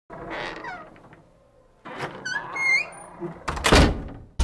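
Short squeaky animal-like calls: one falling in pitch at the start, then a wavering call that rises and dips about two seconds in, followed by a loud thump near the end.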